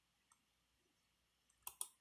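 Two quick clicks of a computer mouse button near the end, a fraction of a second apart; otherwise near silence.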